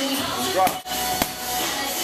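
Background music with two sharp smacks about half a second apart: boxing gloves punching a heavy bag.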